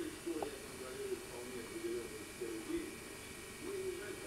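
A faint, indistinct voice, murmuring or humming in short wavering stretches with no clear words, over steady tape hiss.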